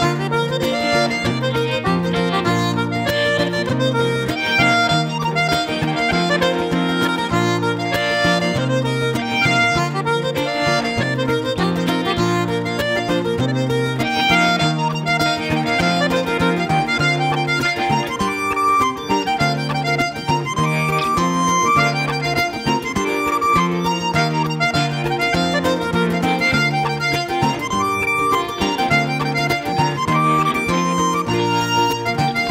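Button accordion playing a tune in quick notes, accompanied by acoustic guitar and electric guitar over a steady bass line.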